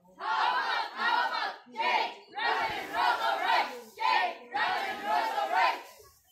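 A group of teenage cheerdancers shouting a cheer chant together in a string of about seven short, rhythmic shouted phrases.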